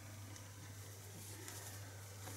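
Quiet room tone with a steady low hum; no distinct sound events.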